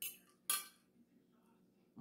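A metal fork striking a ceramic plate twice, about half a second apart, the second clink louder.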